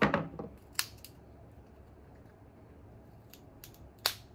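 Hard raw peanut shells cracking and splitting apart by hand: a loud crack with crackling at the start, a sharp snap just under a second in, and a few faint clicks near the end.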